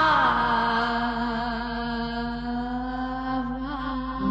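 Vietnamese song: a singing voice slides down into one long, steady held note that wavers slightly near the end.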